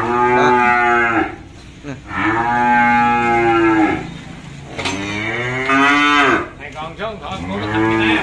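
Young cattle mooing repeatedly: four long calls of one to two seconds each, about every two seconds, the last one running on past the end.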